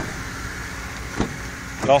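Two clicks from the 2012 Toyota Tundra CrewMax's door handle and latch as the front door is opened: a short one at the start and a sharper one a little past a second in, over a steady low rumble.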